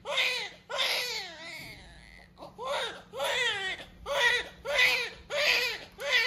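Newborn baby crying just after birth: a run of short, high-pitched wails, each falling in pitch, with a brief lull about two seconds in.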